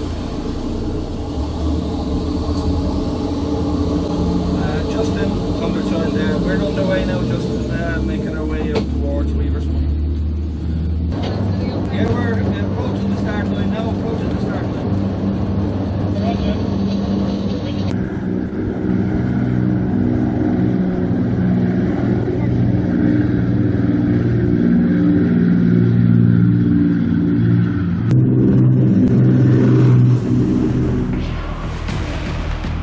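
Powerboat engines running hard under way, heard from inside the wheelhouse as a steady drone that gets louder over the stretch, with faint voices in the background.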